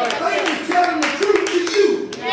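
A man's voice speaking loudly, with sharp hand claps scattered irregularly through it.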